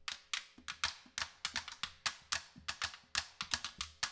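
Uruguayan candombe drums starting to play: quick, sharp wooden clicks of sticks on the drums, with low drum thumps joining about half a second in.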